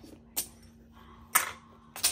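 Mahjong tiles clacking as players draw and set them down on the table: three sharp clicks, the loudest about halfway through and another at the very end, over a faint steady hum.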